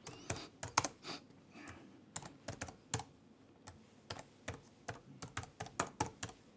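Typing on a computer keyboard: faint, quick, irregular keystroke clicks as text is entered into a form.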